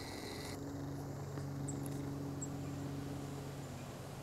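A steady low hum of several pitches, its source not shown, with two faint, brief high chirps from small birds in the middle.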